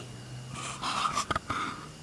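Brief low hum, then breathy huffs of breath with a few soft clicks.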